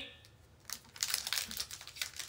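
Foil Pokémon TCG booster pack wrapper crinkling as it is handled and opened, a dense run of crackles starting about two-thirds of a second in.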